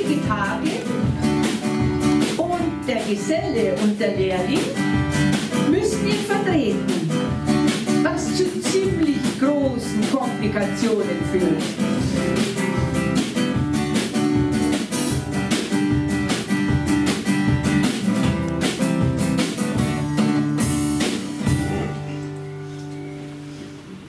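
Live acoustic guitar and drum kit playing an instrumental interlude, the guitar carrying a moving melody over a steady beat.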